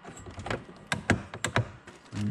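Clamp frame of a Vaquform DT2 vacuum former being closed down over a plastic sheet: about half a dozen sharp clicks and knocks within a second, starting about half a second in.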